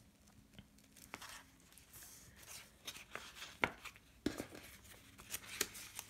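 Quiet rustling of plastic binder sleeves and paper banknotes being handled, with scattered light clicks; the sharpest come about three and a half and four seconds in.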